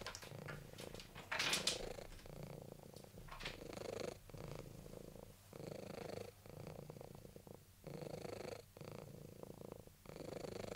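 A domestic long-haired tabby cat purring softly, in a steady rhythm of roughly one breath cycle a second with short breaks between, and a brief louder noise about a second and a half in.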